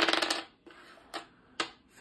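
A pair of small dice rolled onto a hard desktop: a brief loud clatter of rapid clicks as they tumble and settle at the start, then two light single clicks a little later.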